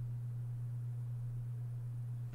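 A steady low electrical hum, one unchanging low tone with nothing else over it.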